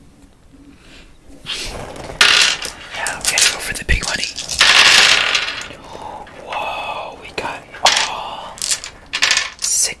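A handful of small plastic dice rattling and clattering as they are rolled. The clatter starts about a second and a half in, comes in a loud spell around the middle, and dies down near the end.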